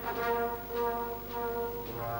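Brass band playing held chords in a quieter passage, the notes changing every half second or so.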